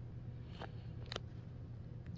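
Quiet room tone: a low steady hum with two faint short clicks, one just after half a second in and another a little after a second.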